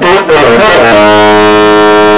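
Tenor saxophone played live: a quick, rough run of notes, then from about a second in a long low note held loud and steady.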